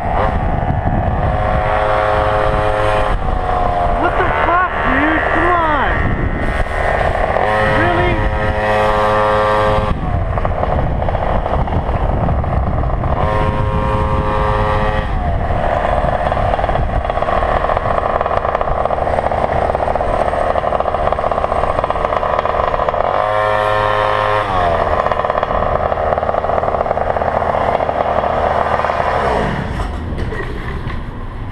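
Small two-stroke engines of gas stand-up scooters running under way, one with a push-ported cylinder. The engine note holds steady for stretches and glides up and down in places as the throttle changes, over steady rushing noise.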